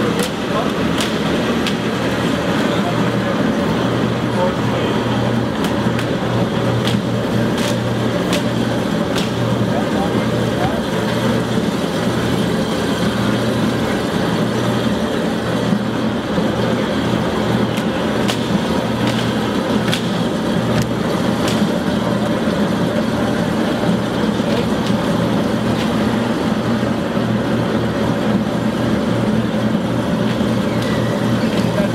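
Electric grape crusher-destemmer running steadily with a constant low hum, its spinning paddle shaft and auger crushing grape clusters tipped into the hopper. Scattered sharp clicks and knocks sound over the steady noise.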